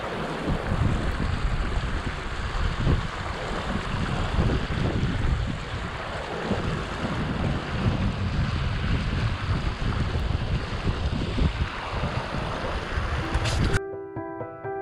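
Wind buffeting the microphone over the steady rush of a shallow, fast-flowing mountain stream. Near the end the sound cuts off suddenly and piano music begins.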